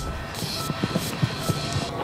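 Soft background music between lines of dialogue, with a few short, low notes.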